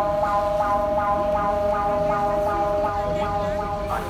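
Mexico City's seismic alert siren sounding from street loudspeakers: a loud steady pitched tone that pulses about three times a second, warning of an earthquake on its way.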